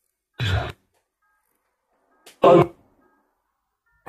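Necrophonic ghost-box app on a phone playing two brief, garbled voice-like fragments about two seconds apart, with silence between them.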